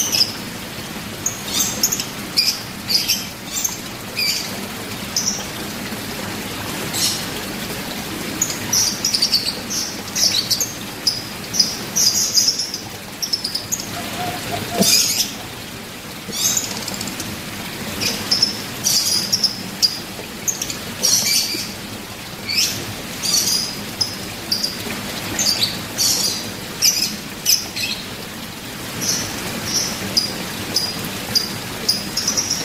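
Small birds chirping, short high calls repeated many times over a steady background hiss.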